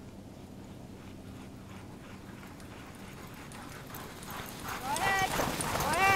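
A sled dog team running up the snow trail toward the microphone: a quick patter of paws that grows louder over the last couple of seconds, with high-pitched voices joining about five seconds in.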